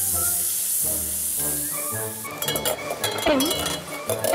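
Chicken pieces sizzling in hot oil in a frying pan as they are stirred with a silicone spatula, over background music. A little over two seconds in, the sizzle stops and quick clinks and scrapes follow.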